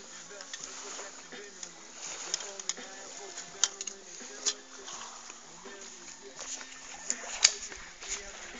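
Handling noise from a fishing landing net with a long metal handle: several sharp clicks and knocks, the loudest near the middle and near the end. A faint low tune runs underneath.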